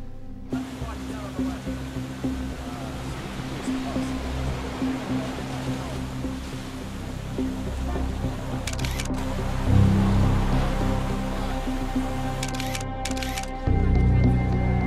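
Background score music over outdoor ambience with a steady wash of running water, cut with two quick bursts of a DSLR camera shutter firing in rapid succession, one a little past the middle and one near the end.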